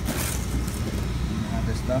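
Plastic packaging crinkling briefly as a hand rummages in a cardboard box, over a steady low rumble.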